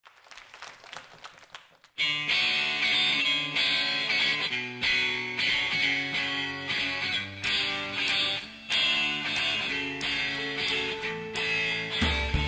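A live band's electric guitars playing the instrumental opening of a song, coming in about two seconds in after a faint start.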